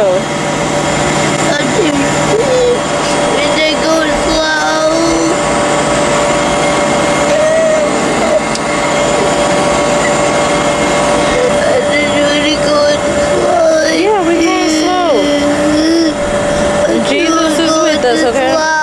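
Carnival kiddie ride machinery running with a steady hum, with the voices of people around mixed in.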